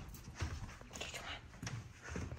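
Quiet room with a few faint, scattered taps and knocks.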